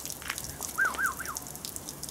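A bird calling: one short phrase of three quick rising-and-falling notes, a little under a second in, with faint scattered ticks around it.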